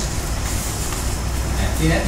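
Steady low rumbling background noise with no clear pattern, with a man's voice starting near the end.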